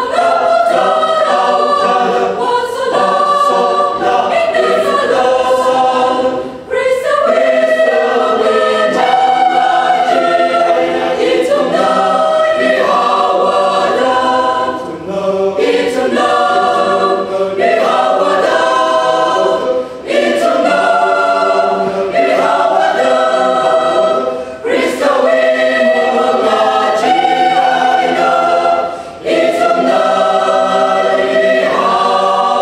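Mixed choir of women's and men's voices singing a hymn in parts, in phrases broken by short breaths every few seconds.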